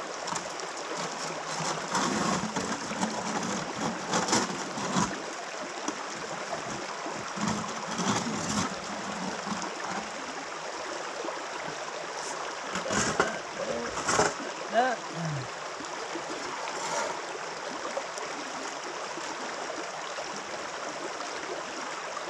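Steady rush of a shallow stream over stones, with scattered splashes and knocks as a gold sluice's metal riffle insert is rinsed and shaken out in a bucket of water during a clean-up.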